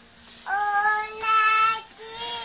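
A small girl singing alone in a high voice, holding long notes after a short breath at the start.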